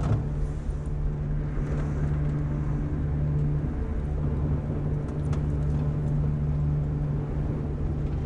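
Car engine and road noise heard from inside the cabin while driving: a steady low drone with an even hum.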